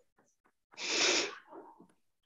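A person's breath hitting the microphone in one short, noisy rush about a second in, like a sharp exhale or a sneeze, with a few faint ticks around it.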